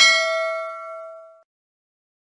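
A notification-bell sound effect: one bright ding with several ringing tones that fades and stops about a second and a half in.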